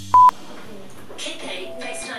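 A single short, loud electronic beep, one steady tone, from a smartphone as a call is dialled.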